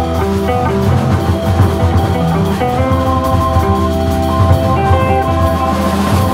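Jazz organ trio playing live: organ holding long notes over electric archtop guitar and a drum kit.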